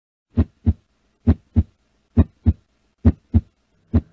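Heartbeat sound effect: paired low thumps in a lub-dub rhythm, one pair about every 0.9 seconds, with four full pairs and the first beat of a fifth near the end.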